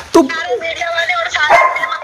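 Recorded phone-call speech: raised, agitated voices arguing, loud throughout, with a sharp loud cry just after the start.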